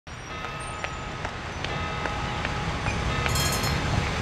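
Low steady rumble of city traffic ambience, growing slowly louder, with a few faint clicks.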